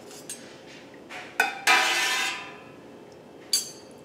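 A metal ladle and knife knocking and scraping against a large stainless steel stockpot while cheese curds are stirred in the whey. There is a sharp clink, then a louder metallic ring that lasts about half a second and fades, and another clink near the end.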